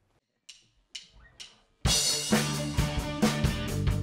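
A live rock band starts a song: a few sharp drum hits, then about two seconds in the full band comes in loud with drum kit, bass and electric guitars playing a steady beat.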